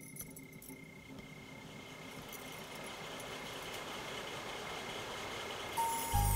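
A few light clinks of curtain rings on a rod as a window curtain is drawn aside, then a soft hiss that swells steadily louder until music comes in near the end.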